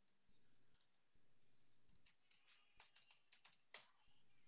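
Faint computer keyboard typing: a few scattered keystrokes, then a quick run of keys about three seconds in, ending in one louder keystroke.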